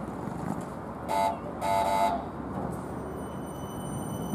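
Horn of a Siemens S70 light-rail trolley sounding two toots, a short one and then a longer one, over a steady station hum.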